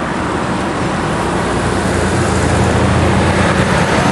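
Heavy road traffic passing close: trucks going by with their diesel engines running. A low engine drone grows louder over the second half.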